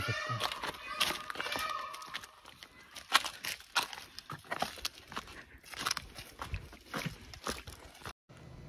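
Footsteps crunching and crackling on dry leaf litter and stones, uneven and repeated. During the first second a forest animal's alarm call sounds in the background, with a short laugh over it.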